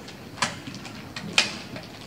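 A few light clicks and knocks from objects being handled, the two sharpest about a second apart, over a low steady background.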